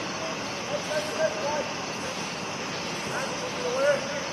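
Faint shouts and calls from players on a soccer pitch, a few short ones early on and another rising call near the end, over a steady outdoor background hiss.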